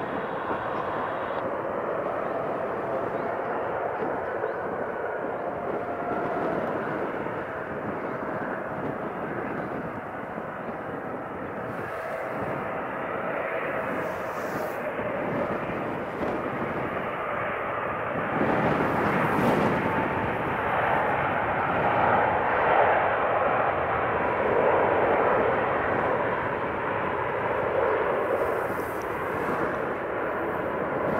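Boeing 777's twin GE90 turbofan engines on final approach, a steady jet roar with a faint whine, growing louder from about two thirds through as the airliner touches down and rolls out.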